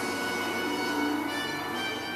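Opening title theme music of a horror TV series playing from a television across the room, made of many held tones layered over one another.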